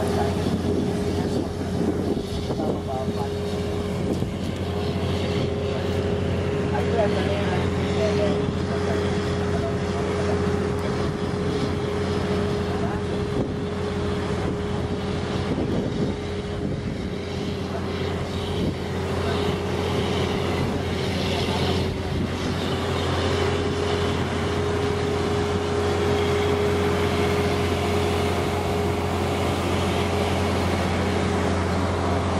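Tour boat's engine running steadily, a constant drone of unchanging pitch, heard from on board.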